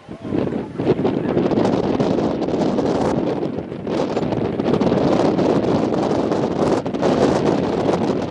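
Wind blowing across the camera microphone: a steady, gusting rush.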